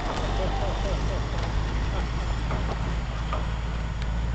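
Semi truck's diesel engine running with a steady low drone as it pulls a long hopper trailer away over dirt.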